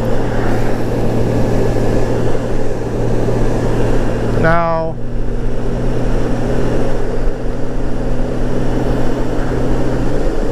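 Honda GL1800 Goldwing's flat-six engine cruising at a steady speed: a constant low hum under steady wind noise on the microphone.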